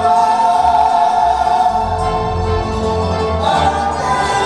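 Live tierra caliente band playing a song, with voices holding long notes over bass guitar and drums.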